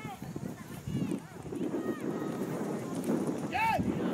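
Voices calling and shouting across an outdoor soccer field, too distant to make out words, with one louder shout near the end, over a low rumbling background noise.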